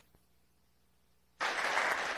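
Audience applauding, starting about one and a half seconds in after a near-silent pause.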